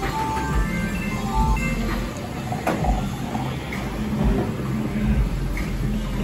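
Video poker machine playing its win count-up: quick runs of short electronic beeps stepping up and down in pitch for the first second and a half as a win is credited. Bar background music with a steady bass beat plays throughout.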